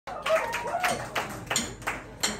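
Audience clapping along in time, about three claps a second.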